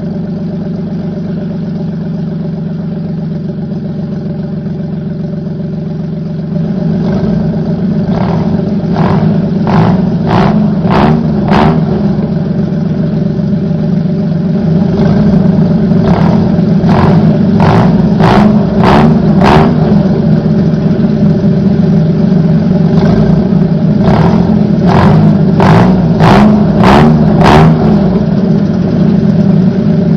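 VAZ 2110 inline-four engine running through a straight-through exhaust muffler: it idles steadily for about six seconds, then grows louder and is blipped again and again in quick revs, in three bunches.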